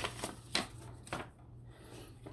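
A few light taps and rustles of a trading card in a plastic toploader and paper mailers being handled on a desk, the loudest near the start and about half a second in.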